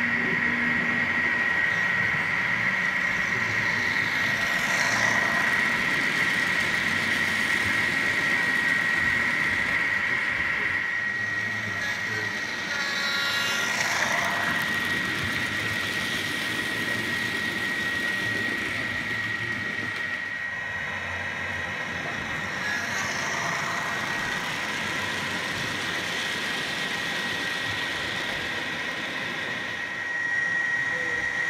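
Model Class 57 diesel locomotive running along the layout track with its coaches: a steady engine-like running sound with a constant high whine, and a brief passing swell a few times.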